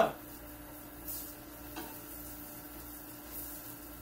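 Tongs and a spatula working sausages around in a frying pan: a few light taps and scrapes of the utensils against the pan, over a steady low hum.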